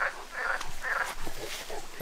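A large black mastiff-type dog rooting and rolling in loose dirt, giving short breathy sounds about two a second.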